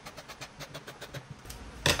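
Scissors snipping through fabric in a quick run of short cuts. Near the end the scissors are set down on the table with one loud clack.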